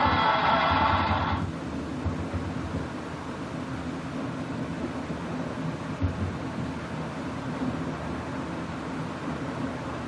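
Background guitar music ends about a second and a half in, giving way to a steady hiss with a low hum.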